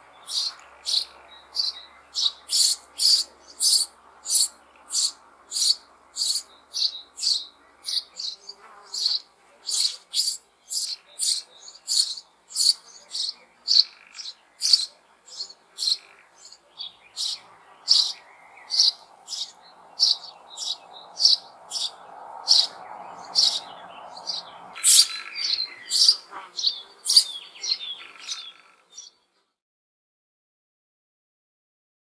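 Sparrow chicks begging for food with short, high chirps repeated about two a second, growing louder near the end and then stopping abruptly.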